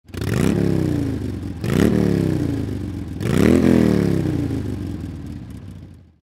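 Motorcycle engine revved three times, each rev rising quickly and falling away slowly; the last one dies away near the end.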